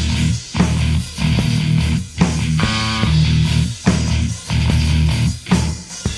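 Rock band playing an instrumental passage with no vocals: electric guitar and bass riffing in short, repeated bursts broken by brief gaps.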